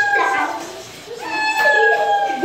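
A wet cat meowing long, drawn-out meows while being held in a bath basin. One meow tails off about a second in and another starts near the end.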